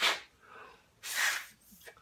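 Two short puffs of breath blown through a small, freshly pierced plastic cap to clear debris from the hole so that no contaminants get into the supercharger fluid. The first puff is brief, and a longer one follows about a second in.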